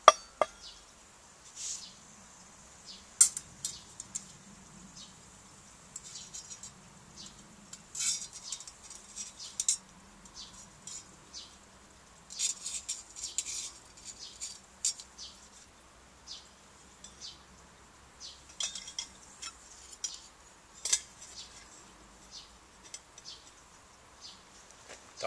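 Stainless-steel parts of a homemade wood stove, made from a perforated cutlery drainer, clinking and knocking together with a steel mug as the stove is put together. Scattered light metallic clinks, the sharpest near the start and about three seconds in.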